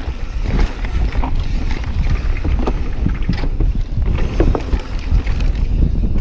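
Yeti trail bike descending a dirt trail at speed: wind buffeting the camera microphone, with tyres rolling over the dirt and scattered rattles and clicks from the bike.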